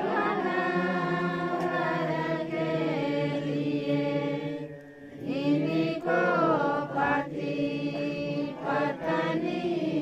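A group of voices singing a slow hymn together in long held notes, with a short pause for breath about five seconds in.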